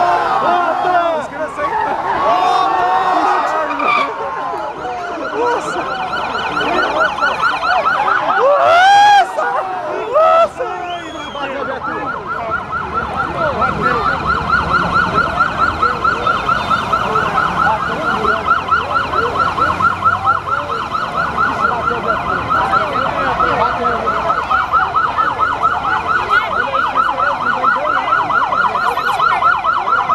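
Police vehicle sirens as patrol cars pull out, at first mixed with crowd voices. About nine seconds in come a couple of loud rising-and-falling sweeps, and from about twelve seconds on a fast, even warble holds steady.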